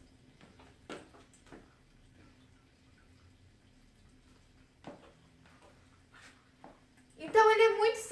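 Quiet room with a faint steady hum and a few soft taps of high-heeled shoes on a tiled floor as a person turns in place; a woman starts talking near the end.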